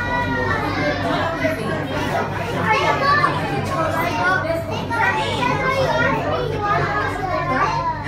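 Children's voices chattering and calling out over one another, with a steady low hum underneath.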